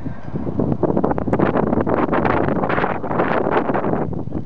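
Wind buffeting a camera microphone outdoors: loud, gusting noise that rises and falls unevenly.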